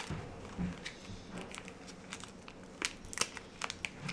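Foil packet crinkling faintly as it is handled, with a few light clicks and ticks in the second half.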